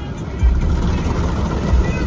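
Automatic car wash heard from inside the car cabin: a low, steady rumble of the wash machinery and water working over the car.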